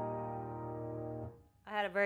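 Grand piano's final chord of the hymn ringing and slowly fading, then cut off sharply about a second and a quarter in as the keys and pedal are released. The player calls it a sour note at the end.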